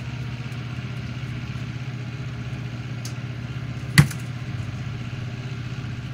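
A steady low mechanical hum, with a single sharp click about four seconds in.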